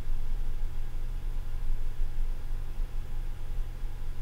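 A steady low hum with a faint hiss, the constant background noise of the recording, with no other event in it.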